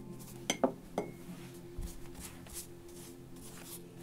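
A few sharp clinks about half a second to a second in, the last ringing briefly, like a hard object knocked against glass or crockery, over soft sustained music tones.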